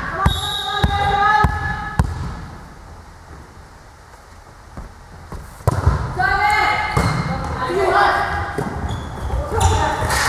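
Volleyball players shouting calls to one another, with sharp thuds of the ball being struck. A few thuds and calls come at the start, then it goes quiet for a few seconds, then a hard hit a little past halfway is followed by more shouted calls as the rally starts.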